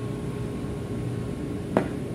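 Steady background hum of machinery and ventilation, with one sharp click near the end as the metal parts of a dismantled air compressor relief valve (spring, valve stem, brass body) are handled on the desk.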